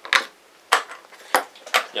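Wooden chess pieces set down on the board and the chess clock pressed during a blitz game: four sharp clicks and knocks, roughly half a second apart.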